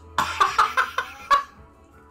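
Men laughing: a quick run of about six short bursts of laughter, over within about a second and a half.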